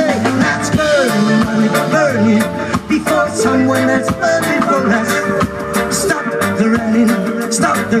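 Live reggae band playing an instrumental passage: electric guitars, drum kit and keyboards over a steady beat. The singer comes back in right at the end.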